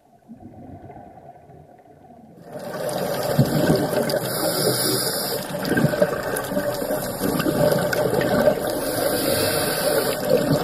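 Underwater sound picked up through a dive camera's housing: a loud rushing, crackling water noise that starts suddenly about two and a half seconds in, with a brighter hiss swelling twice.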